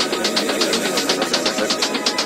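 Deep house music with the bass cut away, leaving quick steady hi-hat ticks, about seven or eight a second, over held synth tones.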